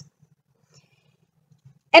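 A pause with almost no sound, only a faint low hum; a woman's narrating voice starts again right at the end.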